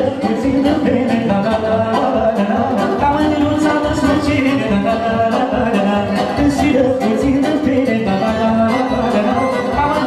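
Oltenian folk band playing dance music with a singer over the instruments and a steady, even beat.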